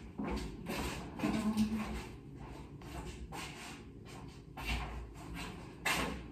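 Faint, scattered knocks and clicks of things being moved and handled out of sight, as someone rummages for a bottle, with a brief low murmur about a second in.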